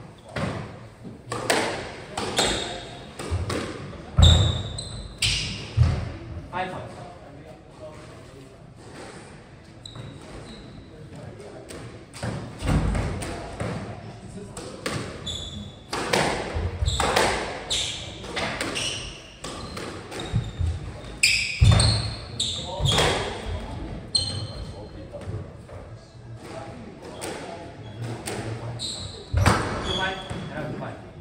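Squash rally: the hard rubber ball struck by rackets and hitting the court walls and floor, a run of sharp, irregularly spaced impacts, with short high squeaks of shoes on the wooden floor.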